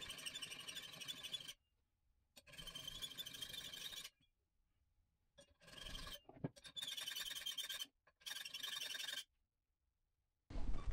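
Smooth-cut hand file worked across a compressor connecting rod cap, metal rasping with a squealing ring. Five strokes of about a second each with short gaps between, and one sharp knock a little past halfway. The cap is being filed flat to shrink the rod's worn, oversized bore.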